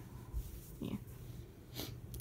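A quiet pause in a small room: a short murmured "yeah" a little under a second in, then a breath drawn in near the end.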